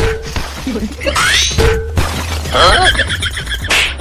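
Edited-in comedy sound effects over a steady bass-heavy music bed: a quick rising whistle sweep about a second in, a stretch of warbling tones, and a sharp crash just before the end.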